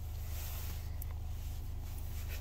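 2013 Honda Accord engine idling steadily, heard from inside the cabin as a low, even hum. It has just caught and stayed running despite a pending throttle actuator (P2101) code.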